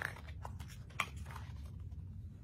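Pages of a paperback picture book being turned and handled: a few short papery crinkles and snaps, the sharpest about a second in.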